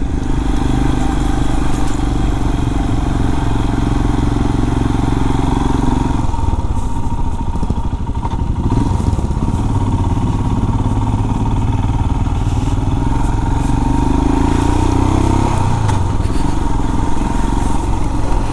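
Motorcycle engine running at low speed, heard from the rider's seat over a steady rush of road and wind noise. The engine note drops about six seconds in as the bike slows for a junction, and rises again near the end as it pulls away.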